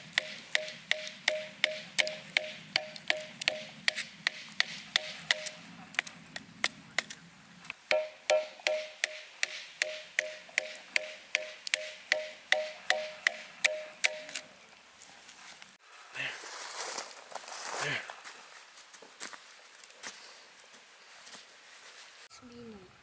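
Knife being batoned through a small stick of wood: quick strikes on the blade's spine, about three a second, each with a short metallic ping. The strikes break off briefly about a third of the way in and stop about two-thirds of the way through. A few seconds of the knife shaving curls off the split wood for a feather stick follow.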